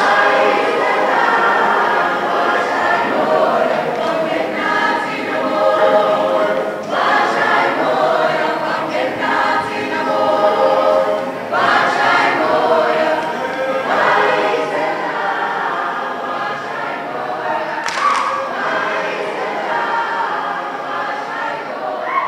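A large group of young voices singing together in chorus, a cappella, one continuous song.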